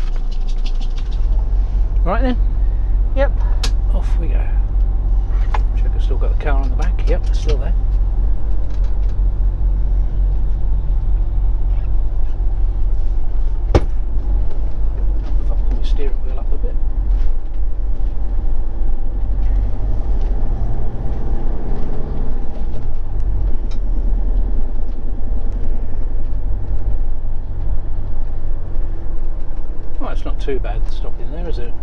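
Motorhome engine running steadily at low revs, heard from inside the cab: a constant low hum as the vehicle idles and then moves off slowly.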